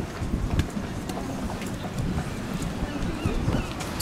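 Wind buffeting the microphone outdoors, an uneven low rumble.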